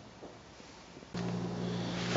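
Faint room tone, then about a second in a steady low hum starts abruptly as the recording cuts to a new take.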